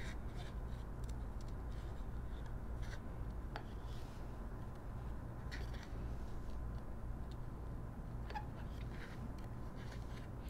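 Small craft scissors snipping through patterned paper in short, irregular cuts while fussy-cutting around printed flowers along a border strip. The snips are faint, over a steady low hum.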